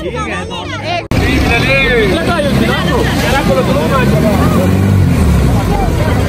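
Several voices calling out over the steady low rumble of a jet ski speeding across the water. About a second in the sound cuts suddenly and becomes louder.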